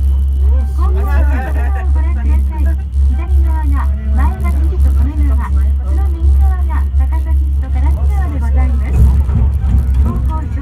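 Steady low rumble inside an aerial ropeway cabin travelling up its cable, with people talking over it. The rumble turns rougher and uneven near the end.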